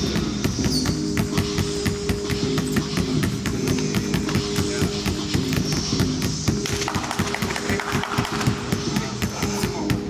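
Background music that cuts in suddenly at the start, with held low notes under a busy run of sharp hits.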